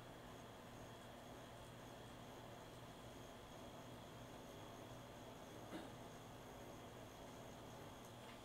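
Near silence with the faint steady hum of a pen-style rotary tattoo machine running at low voltage while shading, and one faint click about six seconds in.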